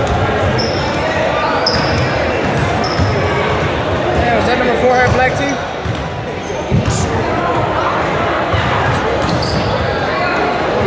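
Several basketballs bouncing on a hardwood gym floor during warmups, with short high squeaks now and then, in a large echoing gym.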